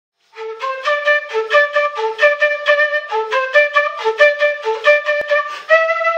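Bamboo kena, the Andean notched end-blown flute, playing a quick melody of short separate notes. Near the end it settles into one long held note.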